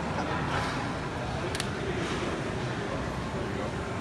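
Background noise of a busy gym: a steady low rumble with indistinct voices, and one sharp click about one and a half seconds in.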